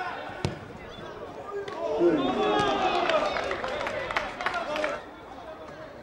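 Football players shouting and calling to each other on the pitch, several voices overlapping for about three seconds from two seconds in. A single sharp thud of the ball being kicked comes about half a second in.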